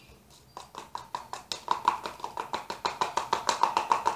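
Quick, even tapping of a utensil against a small container, as when stirring a hair-bleach mixture, about seven taps a second with a short ringing note to each. It starts about half a second in and grows louder.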